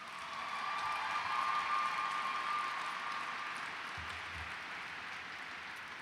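Audience applause that swells in the first second and then slowly fades, with a thin steady high tone held through the first half.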